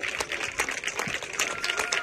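Scattered hand clapping from a small crowd, many irregular claps with some voices beneath.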